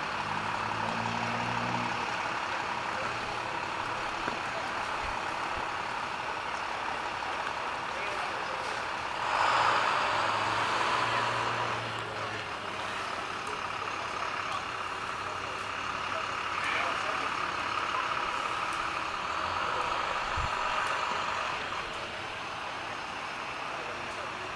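Outdoor city background noise: a steady hum of road traffic, with a louder vehicle passing about ten seconds in.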